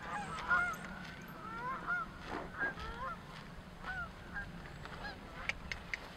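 Geese honking, fairly faint short calls coming again and again, with a few light clicks near the end.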